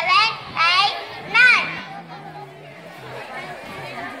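A girl's voice through a microphone and PA speaker, three short loud high-pitched utterances in the first second and a half, then softer background chatter with a lower voice underneath.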